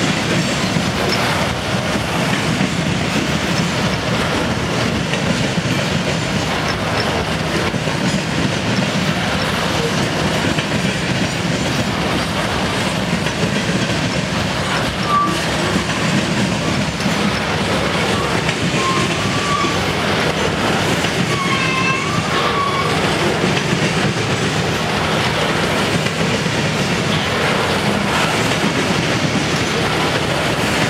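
A CSX freight train of loaded hopper cars rolling past close by: a steady rumble and clatter of steel wheels on rail that holds throughout. A few brief high tones sound partway through.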